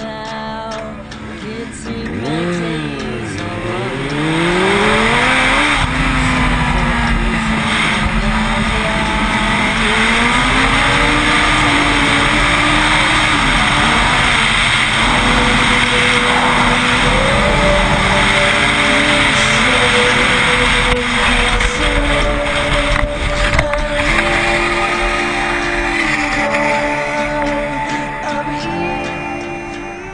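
Motorcycle engines revving up and down and then running steadily with shifts in pitch, under a heavy rush of wind noise on a helmet-mounted camera.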